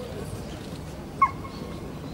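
A single short, sharp animal yelp about a second in, falling slightly in pitch, over steady low background noise.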